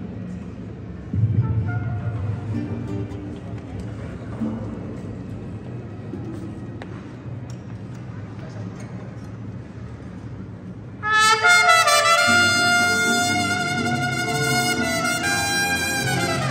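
Mariachi ensemble playing: low, quiet sustained notes for the first part, then trumpets come in loud about eleven seconds in, over the strings.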